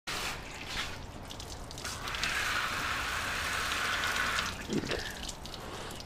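Water running steadily for about two and a half seconds in the middle, with scattered small clicks and drips around it.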